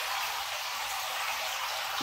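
Steady hiss of water running into a catfish fingerling tank from a PVC inlet pipe.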